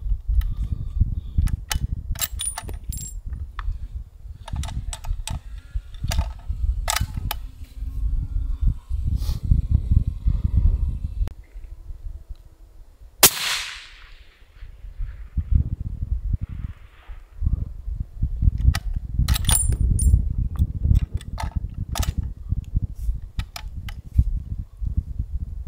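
A single suppressed rifle shot about thirteen seconds in, a sharp report with a short ringing tail. A low rumble of wind on the microphone runs through the rest, with scattered small clicks.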